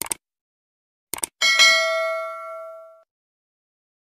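Subscribe-button sound effects: a short click, then two quick clicks a little after a second in, followed by a bright notification-bell ding that rings out and fades away over about a second and a half.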